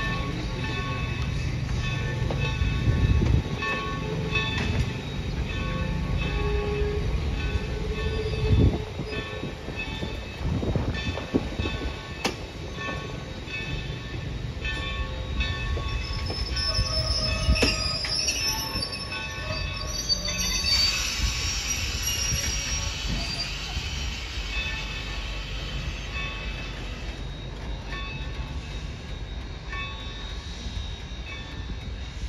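Steam-hauled passenger coaches rolling past slowly, their wheels and couplings rumbling with occasional knocks and thin wheel squeals. A brighter, hissing squeal grows louder about two-thirds of the way through.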